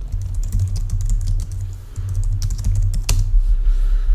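Typing on a computer keyboard: a run of quick key clicks, with one sharper, louder click about three seconds in, over a steady low hum.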